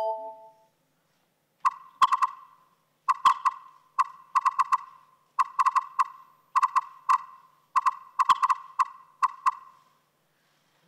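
Electronic smartphone notification pings: short beeps of one pitch arriving in quick clusters of two to four, the clusters repeating about once a second from nearly two seconds in.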